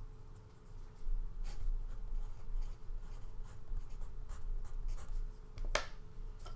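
Sheets of paper being handled, giving irregular soft rustles and a stronger rustle near the end, over a faint steady hum.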